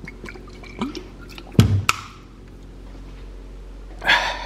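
A handful of short knocks and clicks from objects being handled, the loudest a low thud about a second and a half in, then a quieter stretch.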